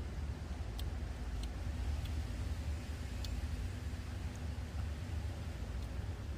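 Steady low background rumble with a few faint light clicks.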